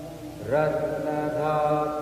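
Devotional mantra chanting: a voice singing long held notes, a new phrase beginning about half a second in with an upward slide into the note.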